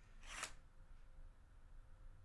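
Near silence broken by one brief, soft rustle or swish about half a second in.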